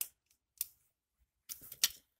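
Small metal tools and a cable terminal being handled: a few sharp metallic clicks, then a quick cluster of clicks near the end as pliers are picked up and set on the terminal.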